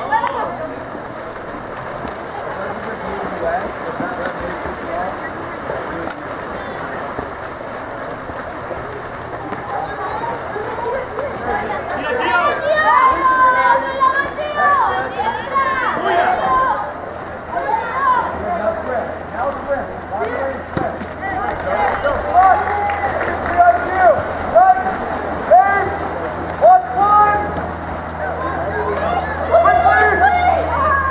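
Water splashing as water polo players swim and fight for the ball, under a steady wash of noise. From about halfway through, voices from the players and crowd shout and call out, with short sharp shouts repeating in the later part.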